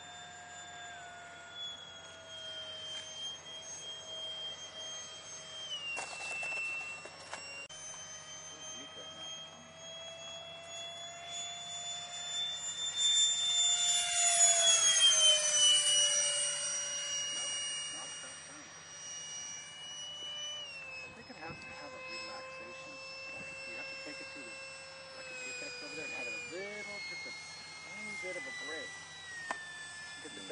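Electric radio-control model airplanes whining overhead, the pitch stepping up and down with throttle changes. About halfway through, one makes a close, loud pass, its whine sweeping down in pitch as it goes by.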